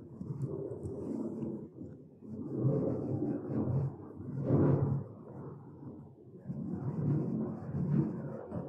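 A low rumble that swells and fades every couple of seconds, loudest about halfway through, with a few faint ticks above it.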